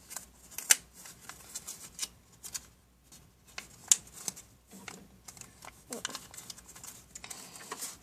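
Small paper envelope handled in the fingers: light rustling with scattered sharp paper ticks, the loudest just under a second in and about four seconds in.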